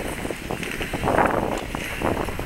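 Wind buffeting the microphone in uneven gusts, strongest a little after a second in, over the general noise of a crowded outdoor ice rink.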